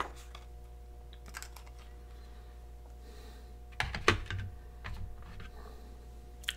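Small clicks and taps of fountain pens being handled on a desk, with a louder cluster of knocks about four seconds in.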